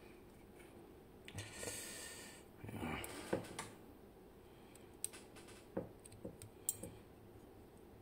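Small metal clicks and scrapes of tweezers and a bent wire tool working at the brass parts of a Bowley door lock cylinder being taken apart. A second-long hiss comes about a second in, a cluster of clicks follows, then a few separate sharp clicks.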